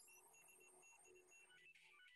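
Near silence, with faint repeated electronic beeps from the title animation's soundtrack.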